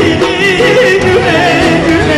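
A man singing into a microphone over instrumental backing, his held notes bending and wavering up and down in ornamented runs.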